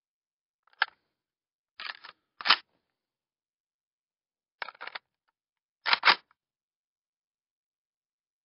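Foley of an Uzi submachine gun's magazine being clipped in and pulled out: short groups of sharp metallic clicks and rattles, five in all, with dead silence between them. The loudest clicks come about two and a half and six seconds in.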